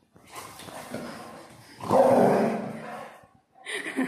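A yellow Labrador retriever gives one loud, drawn-out bark about two seconds in, with quieter sounds before it.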